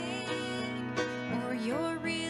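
A woman singing a solo over instrumental accompaniment; her voice slides up into a held note near the end.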